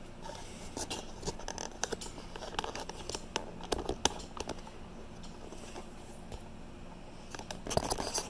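Faint handling noise: scattered light clicks and scrapes as the camera is picked up and moved in close over a cluttered workbench, denser in the first half and again near the end.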